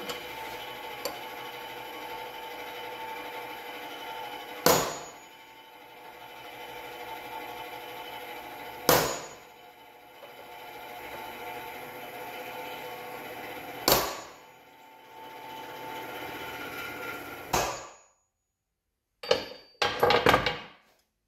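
Claw hammer striking a center punch on a steel base plate three times, about four to five seconds apart, each a sharp ringing metal strike, punching the hole locations for drilling. Near the end a couple of knocks as the hammer is set down on the steel table.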